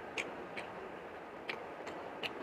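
Someone chewing food with wet lip smacks: four short, sharp clicks spread across two seconds over a steady background hiss.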